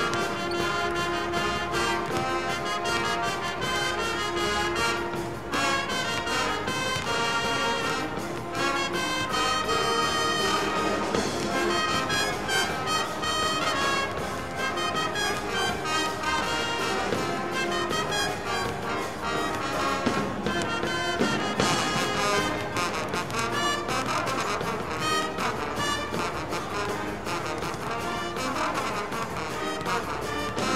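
School pep band playing a brass-led tune with drums keeping a steady beat.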